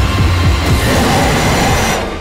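Loud film-trailer soundtrack: dramatic music mixed with dense rumbling effects and deep low booms, beginning to fade away at the very end.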